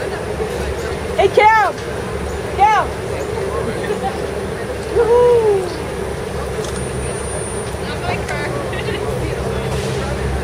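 Outdoor crowd chatter over a low traffic rumble, broken by three loud, high-pitched calls from the crowd within the first six seconds, the last one longer and falling in pitch.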